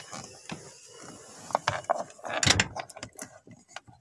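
Handling noise around a car's door and seat: scattered small mechanical clicks and rustles, with a louder rustling scrape a little past halfway.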